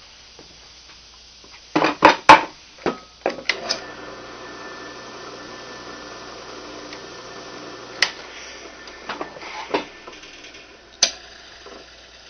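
Square wooden blocks knocked and set down on a drill press's metal table: a quick run of sharp knocks about two seconds in, and a few more later. In the middle a low steady hum runs for about four seconds and stops with a knock.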